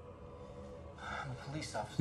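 A person's gasping breath, building from about a second in, with speech starting right at the end.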